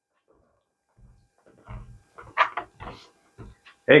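Footsteps of a person walking up across the floor, a few soft irregular thumps with some light knocks among them, starting about a second in.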